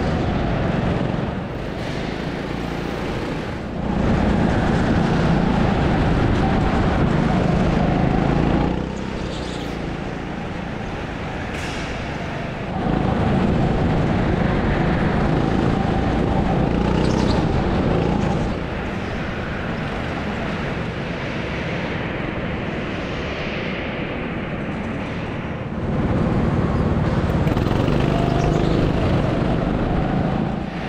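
Go-kart being driven hard around a track, heard from a camera on the kart: its motor noise steps up louder three times for several seconds each and drops back in between.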